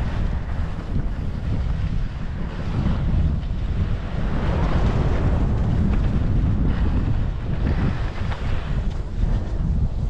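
Wind buffeting the microphone of a camera carried by a downhill skier: a continuous gusty rumble. Over it, the hiss of skis sliding on snow swells twice, in the middle and again near the end.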